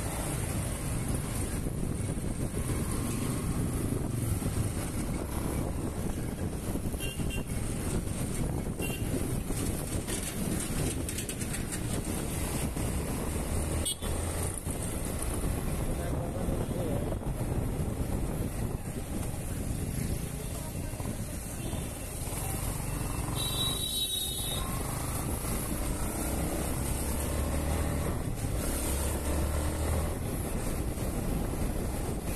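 Yamaha motorcycle running on the road, its engine noise mixed with wind noise on the microphone. About three quarters of the way through, a high-pitched horn toots for about a second.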